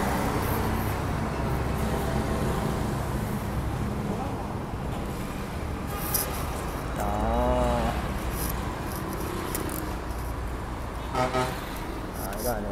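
Steady street traffic rumble, with a brief wavering horn toot about seven seconds in.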